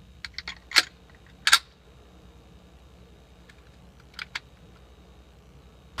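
Metallic clicks and clacks of a Ruger P95 pistol being loaded: several small clicks and a sharper clack in the first second and a half as a converted Beretta M9 magazine goes into the grip, then two quick clacks about four seconds in as the slide is worked to chamber a round.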